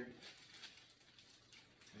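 Near silence, with a few faint rustles of a plastic poly mailer being handled.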